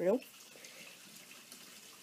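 Faint, steady rush of water running through household plumbing pipes.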